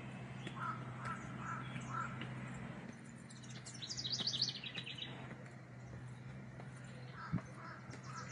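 Birds calling: a crow caws four times in quick succession about a second in and again near the end, and a songbird sings a fast descending run of high notes in the middle. A steady low hum runs underneath, and there is a single thump near the end.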